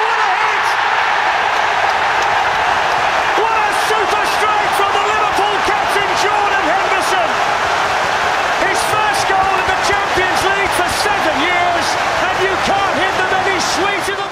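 Large football stadium crowd singing and chanting loudly together in celebration after a goal, a dense mass of many voices with scattered sharp claps.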